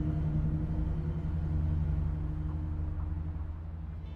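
A low, steady rumbling drone with a few held tones, slowly fading toward the end: a dramatic sound-design underscore.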